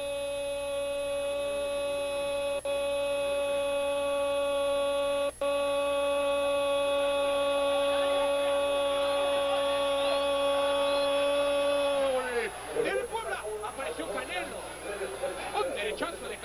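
Football TV commentator's drawn-out goal call, "¡Gooool!", held on one steady high note for about twelve seconds, then dropping in pitch and giving way to excited talk.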